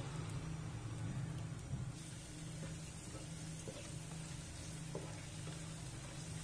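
Cashew nuts frying gently in ghee in a frying pan on a low flame: a faint, steady sizzle over a low steady hum.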